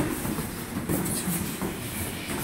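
Kicks and blows landing on a sparring partner with dull thuds, the sharpest right at the start, among the knocks of bare feet stepping on foam floor mats.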